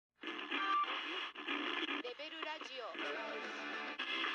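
Thin, radio-like recording of music with voices speaking in it, the voices coming in about halfway through.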